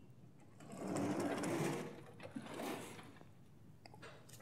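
Chalk writing on a blackboard: a dense scratching and tapping stretch from about half a second in to about two seconds, then a shorter one near three seconds.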